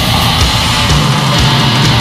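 Death metal band playing, with heavily distorted guitars in a loud, dense, unbroken wall of sound.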